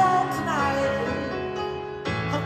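Live pop-rock concert music recorded from the crowd: a male lead singer glides into and holds sung notes over the band's sustained accompaniment, getting quieter toward the end.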